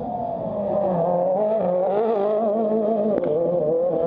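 World Rally Car engine on the stage, its pitch wavering up and down with the throttle and getting louder from about a second in as the car comes nearer.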